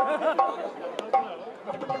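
Indistinct talking and chatter, with two sharp clicks: one at the start and one about a second in.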